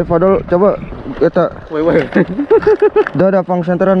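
Loud human voices talking close to the microphone, with a run of short, evenly repeated syllables about two and a half seconds in.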